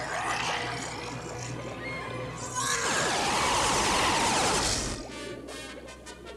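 Dramatic cartoon underscore music. About halfway through, a loud, noisy sound effect swells in, lasts about two seconds, and cuts off suddenly, leaving quieter pulsing music.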